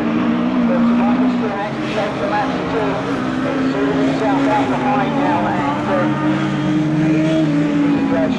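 Rallycross cars' engines running hard at racing revs, several engine notes overlapping, their pitch climbing slowly over several seconds as the cars accelerate.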